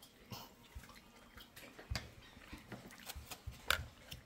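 Faint, wet mouth clicks of a man chewing a soft mouthful of taro leaves cooked in coconut cream, with a couple of louder clicks about two seconds in and near the end.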